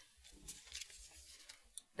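Faint rustling of tarot cards being handled, with a short light click near the end.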